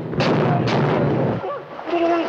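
Two depth-charge explosions about half a second apart, each hitting suddenly and followed by a dense rumble that dies away about a second and a half in.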